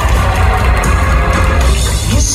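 Live rock band playing loud through a concert hall's PA, with electric guitars, bass and drums, between sung lines.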